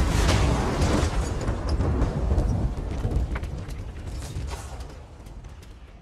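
Deep cinematic explosion boom from a film soundtrack: a heavy low rumble that dies away slowly over several seconds, with scattered small crackles of debris on top.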